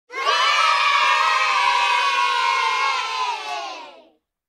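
A group of children cheering together in one long held shout that fades out near the end.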